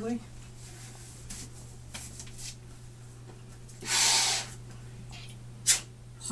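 A breath drawn through a Czech M10 gas mask during a seal check: one loud, rushing breath through the mask about four seconds in, after faint rustling as the mask is pulled on. A short sharp click follows near the end.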